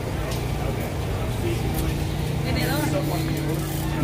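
Street traffic on a busy city street: a steady low engine hum, with a second steady drone joining about a second and a half in, and faint voices in the background.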